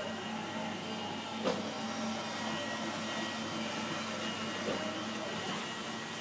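Steady machine hum with a low held tone, broken by one sharp click about a second and a half in.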